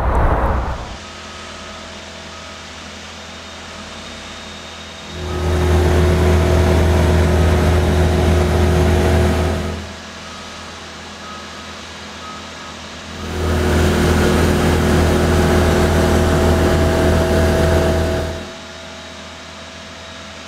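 Diesel engine of a Snorkel A62JRT articulated boom lift, a four-cylinder turbocharged Kubota, running steadily at idle and twice speeding up for about five seconds before dropping back, as the boom is worked.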